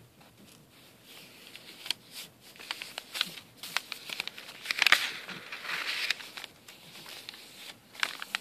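Pages of a handmade junk journal made of coffee-dyed paper being handled and turned by hand: dry paper rustling and crinkling with small scattered clicks. It is loudest about five seconds in, where a page is flipped over.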